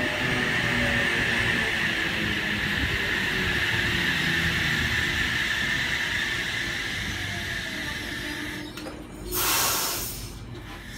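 A double-deck electric train standing at the platform, its equipment running with a steady hum and hiss. Near the end comes a short, loud burst of hiss.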